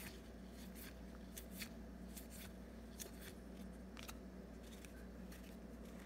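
Faint ticks and light slides of cardboard trading cards being flipped one at a time off a hand-held stack of 2022 Topps baseball cards, about a dozen irregular clicks.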